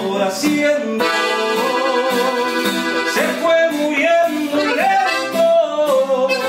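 Live norteño-style music: a button accordion plays the melody over a strummed twelve-string acoustic guitar, with a male voice singing over it.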